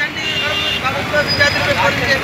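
Steady road traffic noise with scattered shouting voices of a crowd over it.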